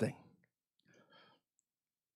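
A man's spoken word trailing off, then a pause of near silence with a faint breath and a small mouth click.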